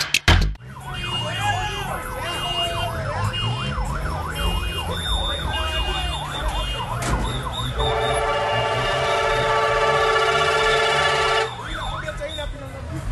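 A vehicle's electronic siren yelps rapidly up and down for several seconds. Then a loud multi-tone horn blares steadily for about four seconds and cuts off suddenly, over a low rumble. It comes from a customised matatu making its entry.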